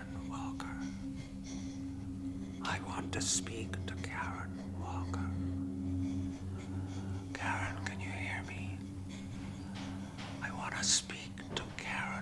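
A woman whispering in short breathy phrases with sharp hissing s-sounds, over a low steady drone.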